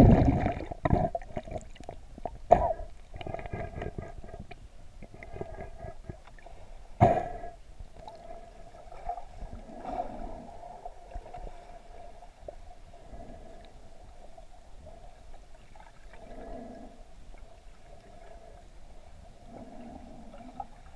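Muffled underwater sound from a submerged camera: water gurgling and moving against it, with a few sharp knocks, the loudest at the very start and about seven seconds in, over a steady hum.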